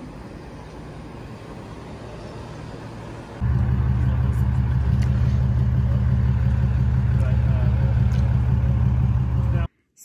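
Steady outdoor background noise, then from about three and a half seconds in a loud, steady low rumble like wind buffeting a phone microphone at an outdoor table; it cuts off abruptly just before the end.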